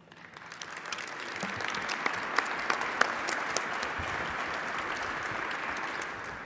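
Audience applauding at the end of a talk, building up over the first second or so and then holding steady.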